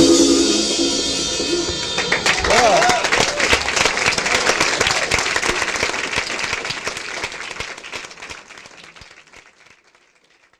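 A live jazz quintet's closing chord ringing out, then an audience applauding and cheering about two seconds in. The applause fades away steadily toward the end.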